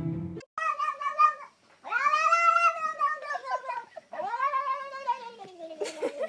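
Orange tabby cat giving three long yowling meows. The first is short and level, and the next two are longer, each rising and then falling in pitch, the last trailing down at its end.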